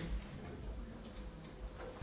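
Quiet conference room: a faint low hum with a few light clicks and shuffling sounds, a little stronger near the end.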